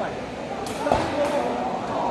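A sepak takraw ball kicked once to serve, a single sharp thump about a second in, over crowd chatter.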